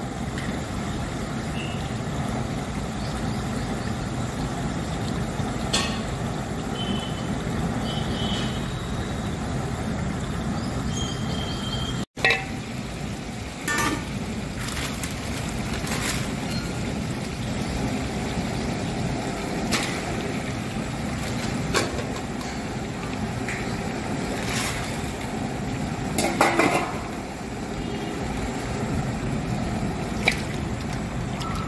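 A large pot of garlic-ginger paste and green chillies frying in oil: a steady sizzling rush, with occasional sharp clinks of the metal ladle against the pot.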